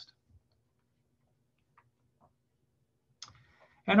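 Near silence with a few faint, widely spaced clicks, then a brief soft noise shortly before speech resumes.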